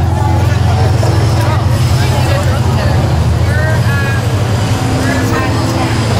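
Downtown street traffic: a large vehicle's engine running low and steady, with people's voices among the passing crowd.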